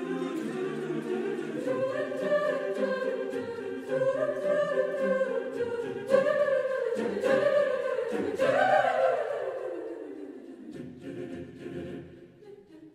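Mixed high-school choir singing a cappella: sustained chords swell in phrase after phrase. About two-thirds of the way through, the voices sweep upward and fall away, and the sound then dies down.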